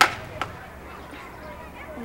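A sudden sharp sound right at the start, the loudest thing here, then a smaller click about half a second later, over faint outdoor background.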